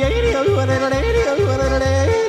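Yodeling in an upbeat pop song: a voice flips rapidly back and forth between low and high notes over a steady, bouncing bass beat.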